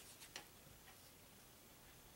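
A few faint, quick clicks in the first half second as a cardboard trading card is flipped over on a wooden tabletop, then near silence.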